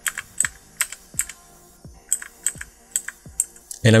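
Arrow keys on a computer keyboard pressed about ten times in separate sharp clicks at an uneven pace, with a short pause in the middle.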